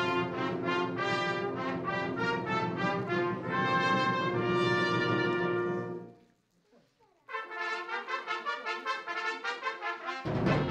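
Concert wind band playing a full, brass-led passage of held chords that cuts off about six seconds in. After a pause of about a second the band comes back in with short, repeated, pulsing notes.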